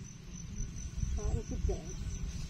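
Insects keep up a steady high-pitched trill under a low rumble that grows louder in the second half.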